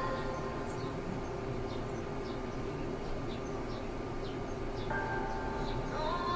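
A woman singing a slow, sparse ballad intro with quiet backing. There is a held sung phrase at the start, a quieter stretch with only a steady background, and a new sung line about five seconds in.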